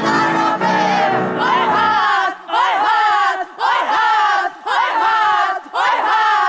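Women's voices singing over sustained low instrument notes, which stop about two seconds in. Then voices shout or chant in short, pitch-bending bursts, about one a second, with brief gaps between them.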